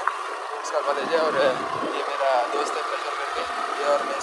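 Motorbike being ridden along a road with three riders aboard: a steady engine note and road noise.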